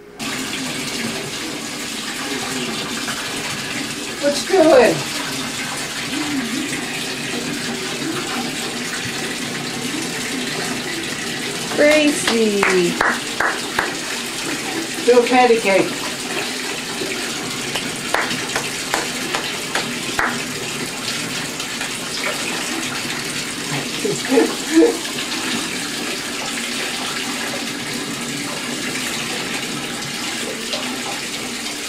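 Bathtub faucet running steadily into the tub. A baby's short vocal sounds come over it four times, about 5, 12, 15 and 24 seconds in.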